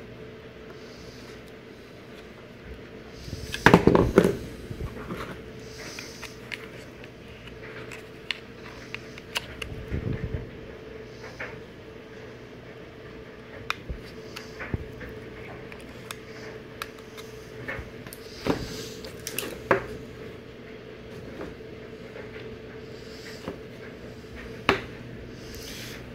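Power cords, a plastic wall adapter and a USB plug being handled on a wooden bench: scattered clicks and knocks over a steady hum, the loudest knocks about four seconds in and again near ten seconds.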